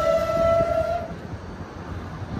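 R188 subway train running on elevated track, its electric propulsion whining at a steady pitch over the rumble of the wheels. The whine cuts off about a second in, leaving the rumble and light knocks.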